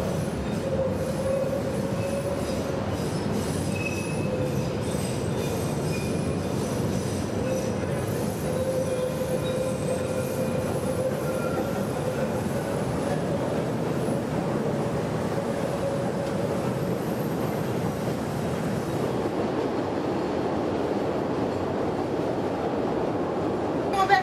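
Chicago 'L' elevated train running on its steel elevated track, its wheels squealing in thin high whines over a steady rumble, the squeal fading in the last few seconds.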